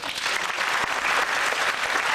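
Audience applauding, with dense clapping.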